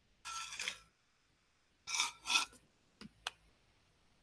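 Sips from a drinking tumbler: three short, noisy slurping sips in the first two and a half seconds, then two small clicks about three seconds in.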